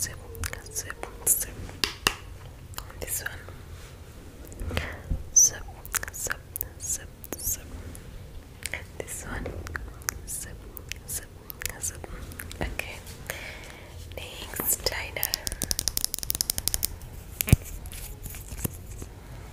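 Soft whispering close to a foam-covered microphone, broken by scattered sharp clicks and taps, with a fast run of clicks near the end.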